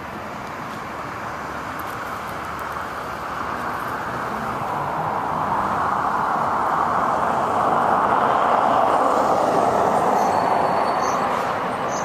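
Road noise of a passing vehicle: a steady rushing that builds over about eight seconds and eases a little near the end.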